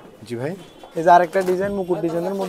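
Indistinct speech from a nearby person: a short rising utterance, then drawn-out words.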